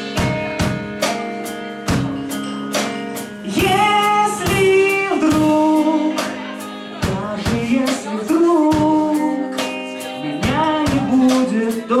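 A live rock band plays, with electric guitars, bass guitar and a drum kit keeping a steady beat. A man sings over the band in several phrases, beginning about a third of the way in.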